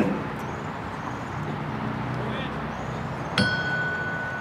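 A brass bell struck once about three and a half seconds in, ringing on with a steady tone. It is tolled after each name read out in a roll call of the dead.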